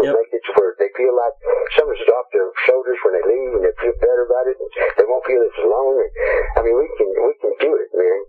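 A man talking without a break, his voice thin and narrow as over a telephone line.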